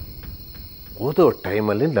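Crickets chirring steadily at a high pitch as night-time background, with faint regular ticks fading out in the first second; a man's voice comes in about halfway through.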